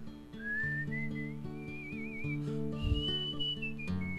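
A man whistling a melody over acoustic guitar chords. The whistled line starts low about a third of a second in, climbs in steps with a wavering held note, and reaches its highest note near the end.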